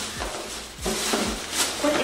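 Paper packaging rustling and crinkling as items are unwrapped from a gift box, over a soft, evenly repeating low thud from background music.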